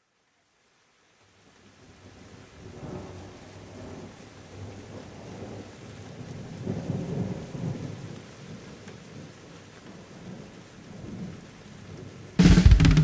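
Thunderstorm recording: steady rain fading in with low rumbles of thunder that swell and die away several times, the loudest about seven seconds in.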